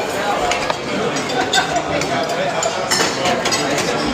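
Busy restaurant dining room: many diners talking at once, with cutlery and glassware clinking now and then.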